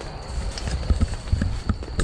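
Footsteps through overgrown grass and dry leaves: a run of soft, uneven thuds and rustles, about two to three a second. Under them runs a steady high-pitched insect drone.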